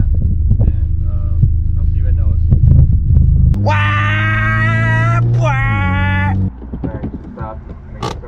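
Loud low rumble of a car driving, heard from inside the cabin, with music playing. About three and a half seconds in, a voice holds a long sung note, broken once, for about three seconds. Then the rumble cuts off suddenly and the sound drops much quieter.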